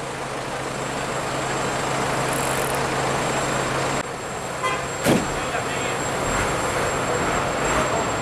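Street noise with the steady low hum of idling vehicle engines, and a brief sharp sound about five seconds in.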